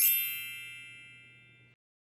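A single bright bell-like ding, struck once and ringing out, fading away over about a second and a half: a slide-transition chime sound effect.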